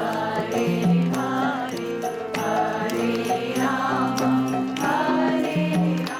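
Devotional kirtan: a group chanting a mantra over steady held tones, with regular percussive strikes keeping the beat.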